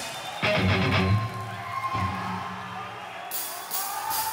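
Metal band's quiet song intro: low notes held steadily, with the crowd's cheering and whoops swelling near the end, just before the full band comes in.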